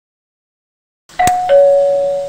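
Two-note ding-dong doorbell chime about a second in: a click and a higher tone, then a lower, longer tone that holds steady.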